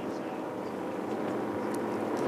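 Faint, steady drone of race boats with Holden 253 V8 engines running out on the water.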